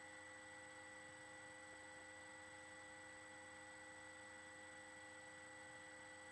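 Near silence: a faint, steady electrical hum and hiss, with no other sound.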